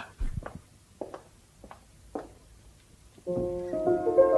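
A few faint knocks, then about three seconds in a keyboard instrument starts playing a soft, slow tune of held notes.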